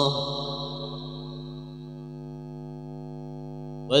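The last held note of a Quran recitation phrase in maqam Hijaz fades over about a second and a half, then lingers as a faint steady tone at the same pitch. A new chanted phrase begins sharply just before the end.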